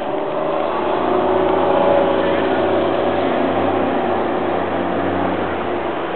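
A motor vehicle engine running, a steady low drone that grows louder for about two seconds and then slowly eases off.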